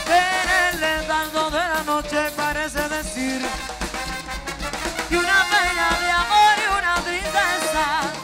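Live Latin band playing upbeat dance music.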